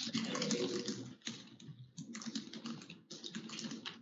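Computer keyboard being typed on in quick runs of keystrokes with short pauses between them.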